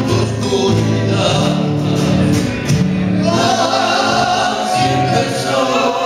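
Three male voices singing together in harmony, accompanied by strummed acoustic guitars. The sung notes are long and held, and the voices move up to a higher chord about three seconds in.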